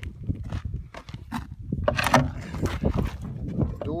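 Rumbling and rustling handling noise from a handheld phone as it is carried and jostled, with scattered clicks and a louder sharp noise about two seconds in.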